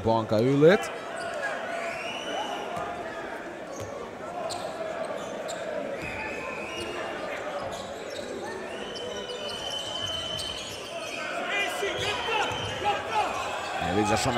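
Basketball dribbled on a hardwood arena court over a steady murmur of crowd noise in a large hall, with a few short high squeaks.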